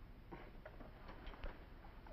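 Quiet, with a handful of faint soft ticks scattered through it.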